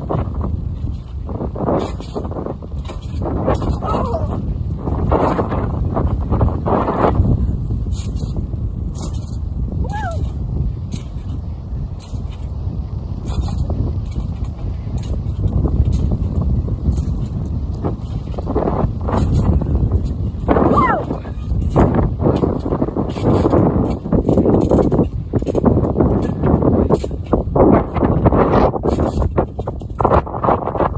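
Wind buffeting the microphone: a heavy, gusting low rumble.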